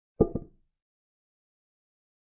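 Chess software's piece-capture sound effect: two quick wooden clacks a fraction of a second apart, as a pawn takes on c4.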